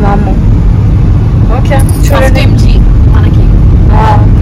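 Steady low rumble of road and engine noise inside a moving car's cabin, with voices talking briefly over it several times.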